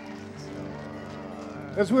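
Soft background music from the worship band: a single chord held steady and unchanging. A man's voice starts speaking near the end.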